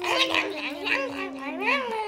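Young children's voices: a long hummed note, held steady and sinking slightly before it stops near the end, under high-pitched, squeaky babbling sounds.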